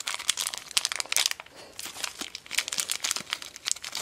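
Thin plastic (LDPE) blind bag crinkling as fingers open it and work a small toy figure out: a dense run of irregular crackles.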